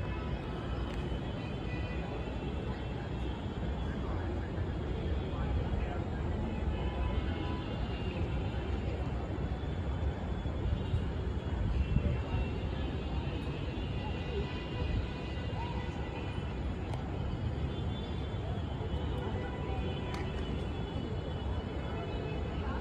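Open-air crowd ambience: indistinct distant voices over a steady low rumble, like wind on the microphone or far-off traffic.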